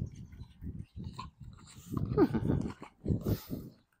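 A horse's low, rumbling sounds in several short bouts.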